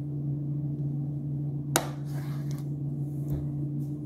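A kitchen knife cutting through dense cake on a wooden cutting board, with one sharp knock of the blade on the board a little under two seconds in. A steady low hum runs underneath.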